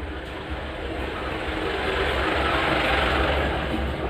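Rumbling vehicle noise, like a passing motor vehicle, swelling to its loudest about three seconds in and then easing off.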